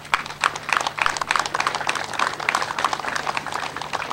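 Audience applauding: many quick, irregular claps that begin suddenly and thin out near the end.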